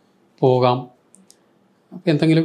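A man's voice in a pause of speech: one short syllable with falling pitch about half a second in, then quiet with a couple of faint high clicks.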